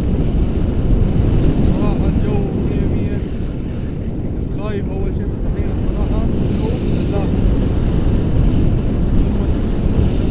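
Wind from the airflow of a paraglider in flight buffeting the camera microphone: a steady, loud low rumble, with faint voices under it.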